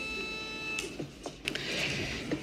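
A steady electronic tone with several overtones cuts off just under a second in. A few light clicks and a soft rustle of paper being handled follow.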